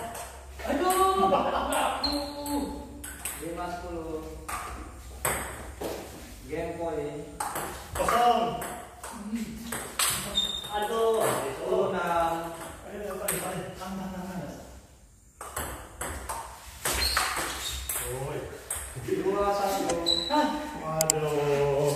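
Table tennis balls clicking sharply off paddles and the table in quick rallies, with people's voices talking and calling out over the play.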